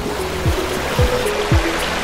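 Water rushing and spraying in a moving boat's wake, under background music with a deep drum beat about twice a second.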